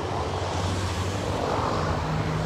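A vehicle engine idling with a steady low hum, most likely the emergency pickup truck standing with its lights on.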